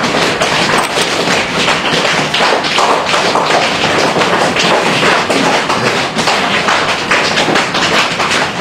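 A group of people patting their legs with their hands, many overlapping pats in a steady patter. This patting loosens legs that have gone numb, sore or stiff during sitting meditation.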